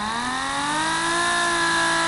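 Air motor of a handheld pneumatic bottle capper spinning its empty chuck, a whine that rises in pitch for about the first half second as it speeds up, then holds steady. It is running at a lowered speed setting.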